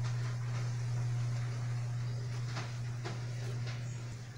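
A steady low hum, with a few faint soft taps or rustles in the last second or two.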